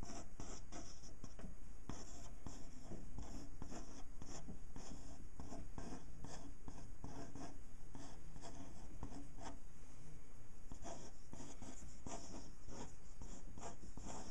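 Pen scratching on paper in many short, quick strokes, a few a second, as a drawing is inked.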